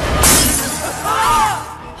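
Film sound effect of a sudden shattering crash about a quarter second in, its noise dying away over the next second and a half, over background music.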